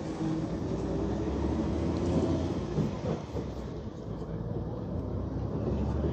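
Cabin sound of a 2017 Hyundai New Super Aero City high-floor natural-gas city bus on the move: the engine running under a steady low rumble of road and body noise.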